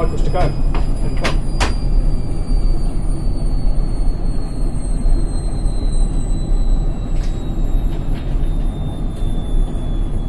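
Indesit front-loading washing machine spinning after the first rinse: a steady low drum rumble under a motor whine that falls slowly in pitch as the drum slows. A few sharp clicks come in the first two seconds and again late on.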